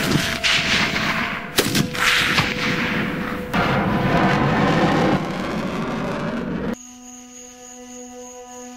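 Two loud sniper-rifle shots about a second and a half apart, each followed by a long noisy rumble. The rumble cuts off suddenly near the end, leaving soft sustained music.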